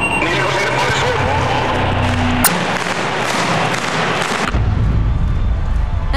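Arena crowd noise under a music sting with low, held bass notes. A sharp crack comes about two and a half seconds in, and a heavy low rumble starts near the end.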